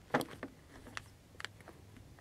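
Faint clicks and scrapes of a Glock 19 Gen 3's recoil spring assembly being handled and pressed into its slide: one sharper click just after the start, then a few fainter ticks.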